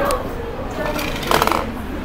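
Classroom background of faint student voices and paper rustling, with a brief louder rustle or scrape about one and a half seconds in.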